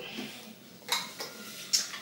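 Small plastic wireless-mic parts and their packaging being handled: light rustling with two short clicks, one about a second in and one near the end.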